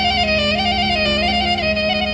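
Klezmer doina music: a clarinet plays a free, heavily ornamented melody that flutters quickly back and forth between neighbouring notes over a steady held low accompaniment.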